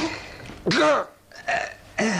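A man's voice making two short vocal sounds with no words, the first loud and the second weaker about half a second later.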